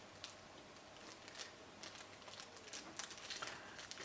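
Faint, irregular crinkling and ticking of a small resealable plastic bag handled in gloved fingers as the resin parts inside are moved.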